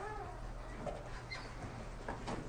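Faint room tone with a steady low hum. A brief faint gliding pitched sound comes at the start, and a few faint short tones follow later.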